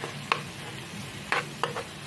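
Chopped tomatoes and onions frying in oil in a nonstick pan, sizzling, while a spatula stirs the mixture and scrapes the pan with a few sharp scrapes or taps.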